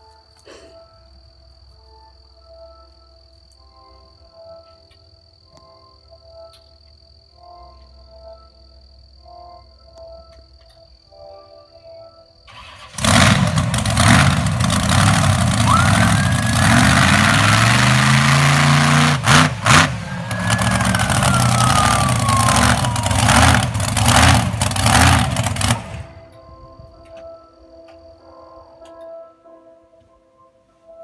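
A car engine starts loud and revs as the car pulls away, with a heavy rush of noise and rising and falling engine pitch. It begins suddenly about 13 seconds in and cuts off abruptly about 26 seconds in. Quiet soundtrack music with sustained tones plays before and after it.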